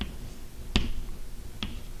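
Chalk tapping against a blackboard while writing: one sharp click about three-quarters of a second in and a fainter one near the end.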